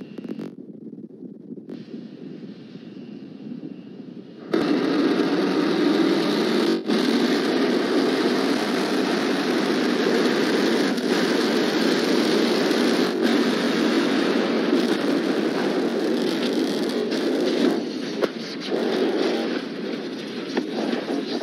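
Starship SN8's Raptor rocket engines relighting for the landing burn: a quieter rush of noise gives way, about four and a half seconds in, to a sudden, loud, steady rocket noise that holds, easing a little near the end.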